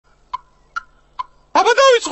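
Three light taps, evenly spaced about half a second apart, each with a brief ring: a conductor's baton tapping a music stand to call the band to attention. Near the end a cartoon character's voice starts calling out loudly.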